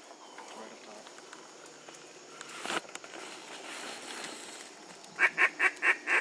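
Rapid run of loud duck quacks, about five a second, starting about five seconds in. Before them there is only a faint background hiss and one brief rustle about midway.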